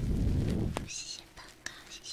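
Fingers rubbing and massaging the ear of a binaural microphone, heard as a deep, close rumble that stops with a click under a second in. Soft whispering follows twice, about a second in and near the end.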